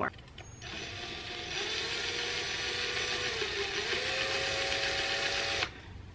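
Cordless drill running with its bit pressed into the bottom of a ceramic pot. The motor whines steadily, its pitch sags briefly under load about midway and recovers, then it stops suddenly near the end. The bit is not getting through the pot.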